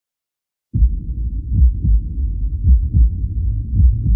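Slowed, pitched-down electronic instrumental starting after a brief silence: deep, uneven bass pulses like a heartbeat, with nothing in the upper range.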